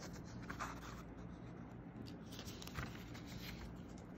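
Paper pages of a booklet rustling as they are handled, in two stretches of a second or so each.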